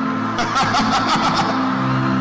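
Background music of sustained synth chords. About half a second in, a rapid pulsing, wavering sound is layered over it for about a second, then the chords carry on alone.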